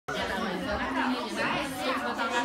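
Overlapping chatter of several voices talking at once in a room.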